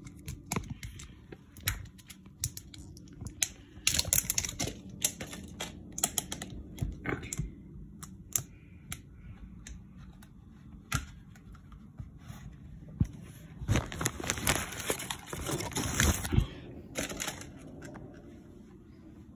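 Plastic tortilla-wrap bag crinkling and rustling in short bursts as the tortillas are handled, with scattered light clicks and taps; the longest spell of crinkling comes about three-quarters of the way through.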